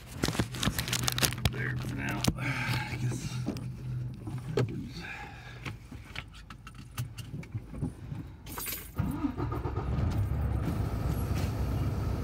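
Keys jangling and clicking handling noise inside a semi-truck cab, over the low hum of the truck's running engine. About nine seconds in, the engine rumble grows louder and fuller.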